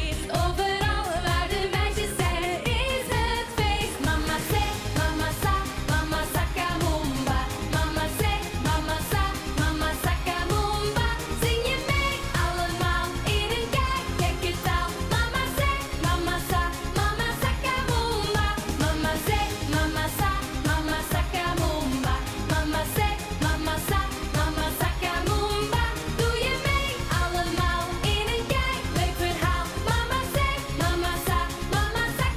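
Live pop music with women singing into handheld microphones over a steady dance beat.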